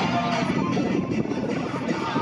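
Aerobatic propeller plane's engine and propeller droning unevenly as it spins, with background music over the PA.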